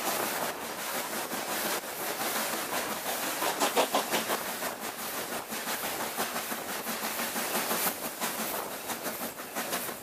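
Steam-hauled train running, heard from an open carriage window: a steady rush of wind and track noise with wheels clicking over the rail joints, swelling slightly about three to four seconds in.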